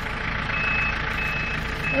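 Tractor reversing while taking up the tow rope: its backup alarm gives three evenly spaced single-tone beeps, a little over one a second, over the steady running of its engine.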